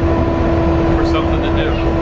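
Cabin noise of a moving passenger vehicle heard from inside: a steady low rumble with a constant motor whine over it.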